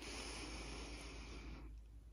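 One slow, soft breath drawn in through the nose, a smooth hiss lasting about a second and a half that fades away near the end.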